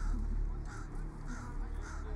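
Crows cawing again and again, several calls a second, over a low steady rumble.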